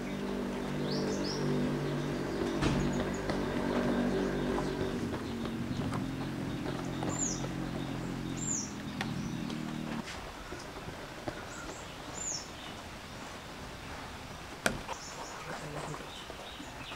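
Birds chirping, several short high calls that sweep downward, over a steady low hum that cuts off abruptly about ten seconds in. One sharp click sounds near the end.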